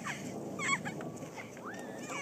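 Distant children's high-pitched calls and squeals: a couple of short wavering cries just under a second in and a rising call near the end, over a steady low background hiss.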